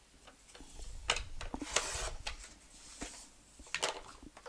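A strip of paper cut on a paper trimmer: a few light clicks as the paper is set in place, then the blade drawn through the paper for about a second, and a few more clicks near the end.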